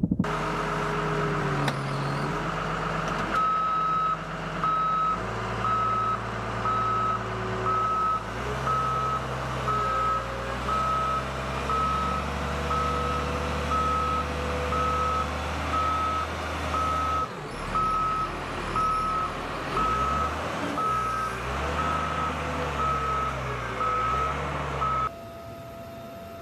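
Reversing alarm of a heavy military vehicle beeping about once a second, over the vehicle's engine running and changing speed as it manoeuvres.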